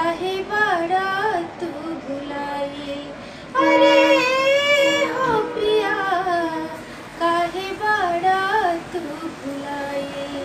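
A woman singing a Bhojpuri folk song solo in practice, with pitch slides and ornaments. About three and a half seconds in she rises to a loud, sustained high note with a wavering vibrato, the loudest part.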